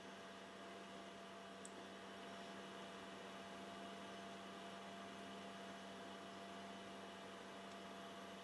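Faint, steady electrical hum: one low tone with a fainter, higher tone above it over light hiss.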